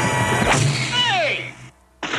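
Brass swing music from a cartoon soundtrack, broken about half a second in by a sudden hit. It is followed by a cartoon sound effect: a whistle sliding steeply down in pitch, the kind used for something falling.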